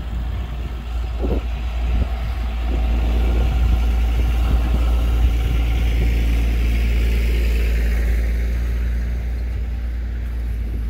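New Holland T7 tractor engine running as the tractor drives past towing a folded Case IH field cultivator, growing louder as it comes by. There is a single clank about a second in, and in the second half a higher whine slides down in pitch.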